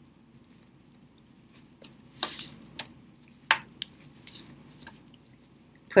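Fabric being handled and turned inside out: a few short, scattered rustles and light taps of cloth in the hands, mostly between about two and five seconds in.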